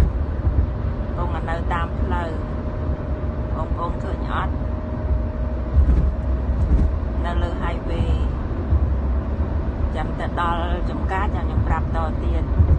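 Car interior noise at highway speed: a steady low rumble of road and engine, with voices talking briefly now and then.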